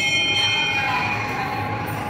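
A metal bell struck once, ringing with several high tones that fade away over about a second and a half.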